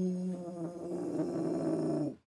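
A man's long, drawn-out "ooooh" of shock, held on one pitch at first and turning rougher about half a second in, cutting off at the end.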